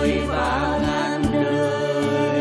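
Live band and orchestra playing a slow bolero instrumental passage: a wavering melody line over sustained chords, with a deep bass note coming in a little past one second in.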